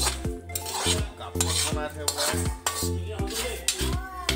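A metal spatula stirring and scraping a thick curry around a large metal wok, in a run of repeated scrapes and clinks. Music with a steady beat plays under it.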